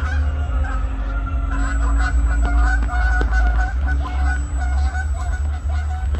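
Geese honking steadily through the whole stretch, over a loud low rumble.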